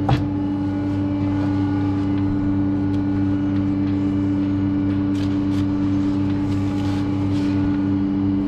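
Motor of a cattle hoof-trimming crush running with a steady, unchanging hum while it holds a cow's front foot raised. A few faint metallic clicks sound about five and seven seconds in.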